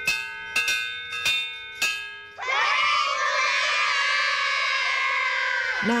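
A few ringing bell-like chime strikes, roughly half a second apart, then a long held shout of several children's voices together lasting about three and a half seconds.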